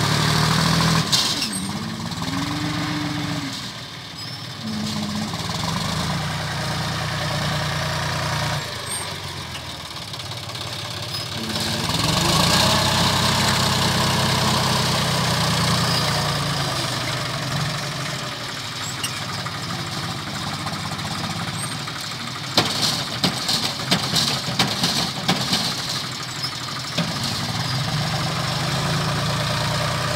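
Diesel tractor engine working a front-end loader, its pitch rising and falling with the throttle as the bucket digs and lifts. A quick run of sharp clattering knocks comes about three-quarters of the way through.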